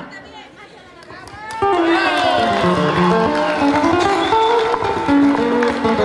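Crowd talk, then about a second and a half in an acoustic guitar starts playing a melody.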